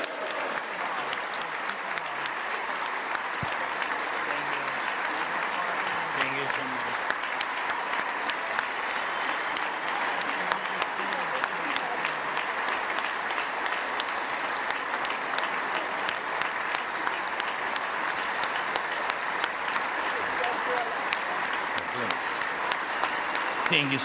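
A large crowd applauding without a break: many hands clapping in a dense, even patter, with a few voices heard faintly under it.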